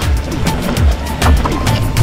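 Background music with a steady drum beat.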